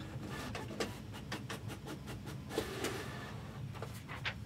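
A printer running: a quick, irregular series of mechanical clicks, with a brief whir about two and a half seconds in.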